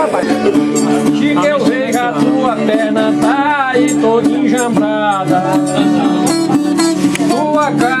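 Violas, the Brazilian ten-string guitars of cantoria, strummed in a steady repeating instrumental interlude between sung verses, with voices talking over the playing.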